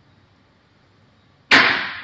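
A single sudden clack about one and a half seconds in, trailing off in a hiss over about a second: a video teller machine's corded telephone handset being lifted from its hook.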